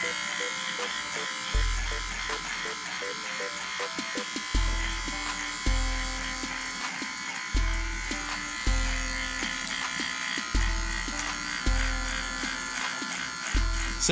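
Electric hair clipper buzzing as it trims the hair at the nape of the neck, under background music with deep bass notes on a steady beat.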